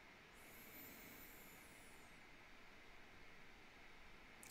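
Near silence: faint room hiss. A very faint, very high thin tone comes in about a third of a second in, bends slightly downward and fades out after about two seconds.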